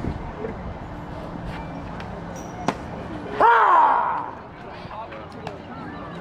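A pitched baseball smacking into the catcher's mitt with a single sharp pop, followed about a second later by a loud shout, the call on the pitch.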